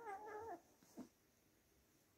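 A kitten's single meow, held fairly level and dropping at the end, ending about half a second in, followed by a faint tap about a second in.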